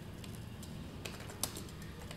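A few light clicks of computer keys or a mouse, the loudest about one and a half seconds in, over a low steady hum.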